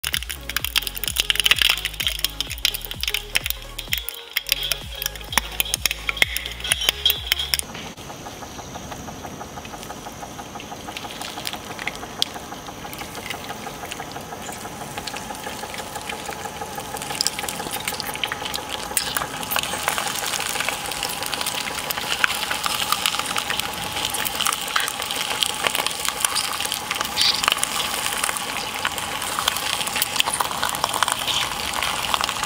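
Background music with a stepped bass line and many clicks for about the first eight seconds. Then an industrial twin-shaft shredder runs with a steady hum, its steel cutter discs grinding and crackling through a whole octopus, louder from about twenty seconds in.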